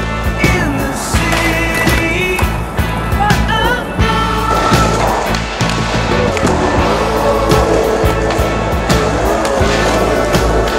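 Rock music with bending guitar notes, over a skateboard on concrete: wheels rolling and the board's repeated clacks and landings.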